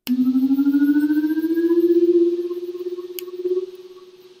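A single loud sustained tone that starts abruptly, glides slowly upward in pitch for about two seconds, then holds and fades away, with a fast ripple in its loudness. A sharp click comes about three seconds in.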